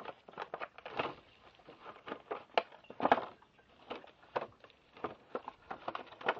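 Clear plastic container being wiped with a disinfecting wipe: irregular rubbing, crinkling and light knocks of the plastic, with a couple of louder knocks about three seconds in.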